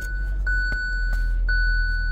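Hyundai i30 engine just started and idling cold, a steady low hum, while the dashboard's seatbelt reminder chime pings about once a second.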